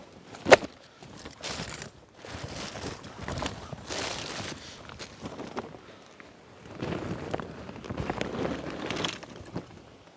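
Rustling and scraping of a bag being handled and shaken out, with footsteps on rough ground and a sharp knock about half a second in.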